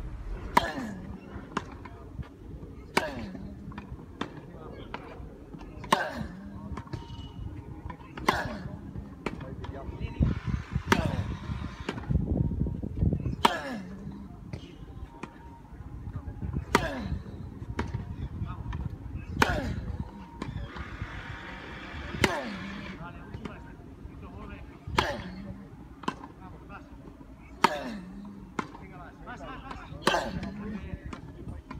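Tennis balls struck by rackets in a baseline rally: a loud, sharp hit about every two and a half to three seconds from the near player, with fainter hits and bounces from the far end between them.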